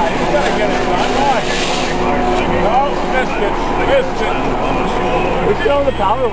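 Indistinct voices talking over a steady mechanical hum.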